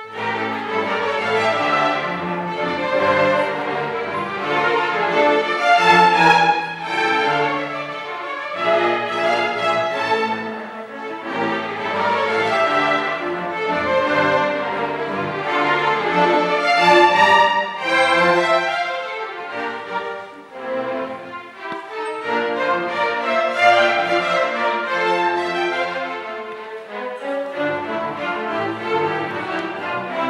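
Chamber string orchestra playing, violins and cellos bowing together in a continuous classical passage, with a brief softer moment about two-thirds of the way through.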